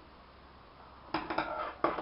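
Near silence, then about a second in a quick run of four or so sharp metallic clicks and clinks: scissors being handled to cut a length of embroidery floss.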